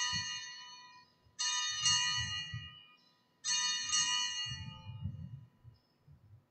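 Altar bells rung at the elevation of the consecrated host, struck in a series of rings about two seconds apart. Each ring starts sharply with bright high tones and dies away.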